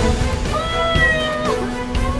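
Background music from a drama score: a held melodic note that slides up and down in pitch for about a second, over a steady low drone.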